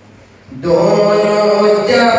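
A man's voice breaks into loud devotional chanting about half a second in, holding long steady notes.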